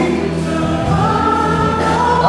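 Gospel worship music: voices singing over instrumental accompaniment, holding long, steady notes.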